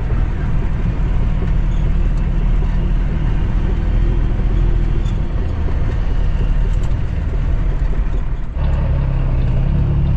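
The Cummins ISX diesel of a 2008 Kenworth W900L running steadily as the loaded truck drives at low speed, heard from inside the cab. About eight and a half seconds in, the sound dips briefly and then settles to a steadier, deeper drone.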